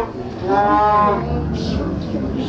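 A man's drawn-out, moo-like vocal call, about a second long, its pitch rising and then falling.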